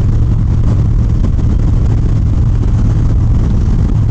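Harley-Davidson Dyna Street Bob's Twin Cam 103 V-twin engine running steadily at highway cruising speed, a low, even drone with a rumble beneath it.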